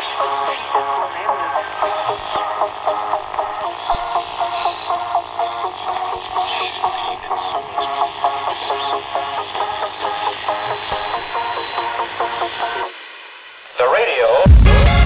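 Hardstyle breakdown: a repeating staccato melody plays without kick drum or bass. A rising sweep builds over its last few seconds, then everything cuts out for about a second just before the drop.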